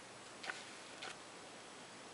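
Two faint clicks about half a second apart, over a steady low hiss.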